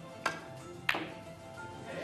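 Two sharp clicks of snooker balls over soft background music. The cue tip strikes the cue ball, and about two-thirds of a second later the cue ball hits the black, which is played as a double and not potted. Near the end, crowd noise starts to rise.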